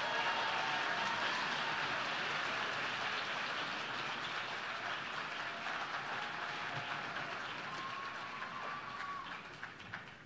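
Audience applause, a dense steady clapping that slowly fades and dies away near the end.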